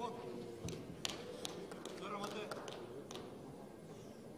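A series of sharp slaps on the judo mat or the judokas' bodies, mixed with raised voices echoing in a large, near-empty hall, as a groundwork bout ends in ippon.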